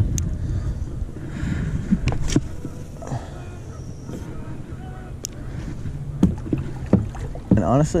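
Low rumble of wind and water on a microphone mounted on a kayak, broken by a few short sharp clicks from handling a spinning rod and reel.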